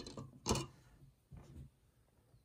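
Plastic TDS tester pen knocking against a clear plastic cup as it is put into the water and stood upright: a light click, then a loud sharp knock about half a second in and a softer one a second later.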